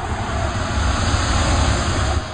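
A swelling rush of noise over a deep rumble, building up and then fading out, typical of an outro whoosh sound effect.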